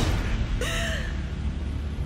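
A short breathy laugh about half a second in, over a low rumble.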